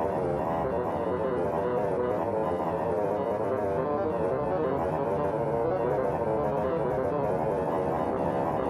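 Sonified data: several layered instrument tones, one for each DNA base, shift continuously as each base's angle to the DNA backbone changes. The loudness of each tone follows that base's distance from the nanogap. The tones blend into a dense, wavering drone.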